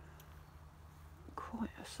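Low steady rumble of distant road traffic, then a woman starts speaking in the last part.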